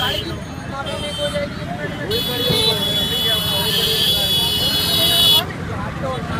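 A vehicle horn sounding in steady blasts: a short one ending just after the start, a faint one about a second in, then a long loud blast of about three seconds from about two seconds in. A crowd talks underneath.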